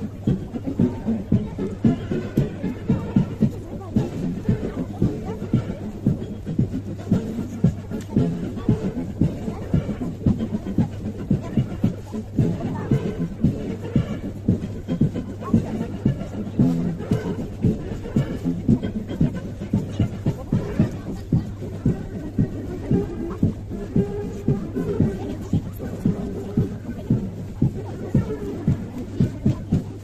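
Military march music with a steady beat of about two beats a second, played for marching troops.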